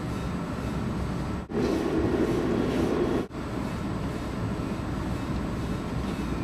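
Steady running noise of a moving Amtrak passenger train heard inside the coach: a continuous rumble from the wheels and rails. It gets louder for a stretch between two brief dropouts, about one and a half and three seconds in.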